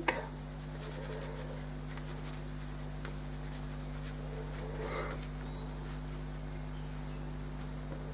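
Quiet room tone with a steady low hum, and faint soft taps of a watercolour brush dabbing paint onto paper.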